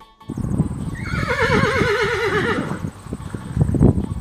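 A horse whinnying: one long, shaky neigh with a quavering pitch that slides slowly downward, starting about a second in. Hoof thuds run underneath, loudest near the end.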